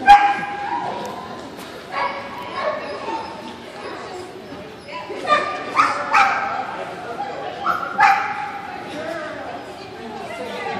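A dog barking and yipping in a series of short, high-pitched calls, the loudest right at the start, with more about two seconds in, a cluster around five to six seconds, and another about eight seconds in.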